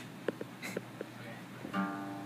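Acoustic guitar: a few soft taps and light string sounds, then a chord strummed quietly near the end and left ringing.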